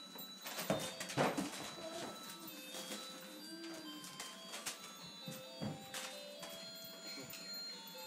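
Faint music of short held notes at changing pitches, with scattered light knocks.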